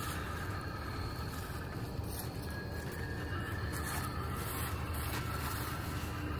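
Steady low background noise with no distinct events.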